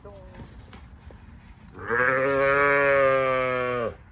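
A young calf bawling once: a single long call of about two seconds that starts about two seconds in and drops in pitch as it cuts off. The calf is being halter-broken and calls as it is led on the rope.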